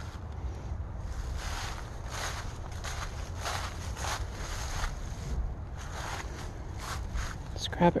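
Footsteps crunching through dry fallen leaves, an uneven series of steps about every half-second to second, over a low steady rumble.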